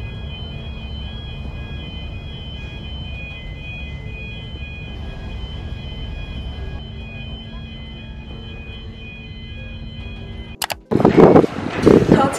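Steady low rumble of a large car ferry's engines and deck machinery, with several constant high whining tones over it. It cuts off suddenly shortly before the end, and a woman's voice follows.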